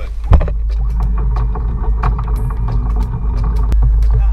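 Sailboat's inboard engine running with a steady low rumble. Over it, a loud knock about a third of a second in, then scattered bumps and clatter as a person climbs out through the forward deck hatch, working on hands and knees.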